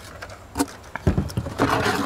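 Handling noise from unboxing a portable propane heater: a few clicks and low knocks as the heater's plastic parts are lifted out of the cardboard box, then a scraping rustle against the cardboard near the end.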